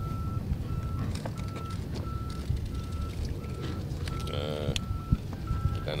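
Back-up alarm of a construction vehicle beeping steadily on one pitch, in short, evenly spaced beeps, over a low rumble.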